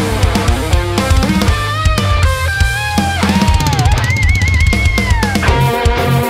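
Ibanez AZ24P1QM electric guitar playing a lead melody of held, bent notes, with a wavering high note about four seconds in that slides down, over a heavy metal backing track with fast drums.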